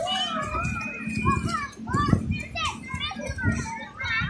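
Young children's voices, high chatter and calls while they play, with other voices mixed in.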